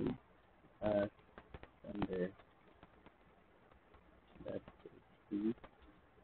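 Five short, low pitched vocal calls, each a fraction of a second long, spread unevenly about a second apart.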